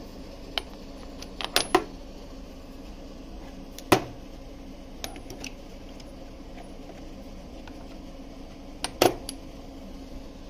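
Steel sockets clinking against each other and the socket rail as they are handled: a handful of separate sharp metal clicks, the loudest about four seconds in, over a steady low hum.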